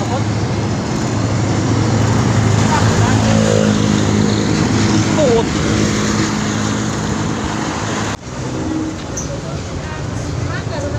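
Motorcycle engine running steadily while riding through city traffic, with road noise. About eight seconds in the sound drops suddenly and changes to a quieter traffic background.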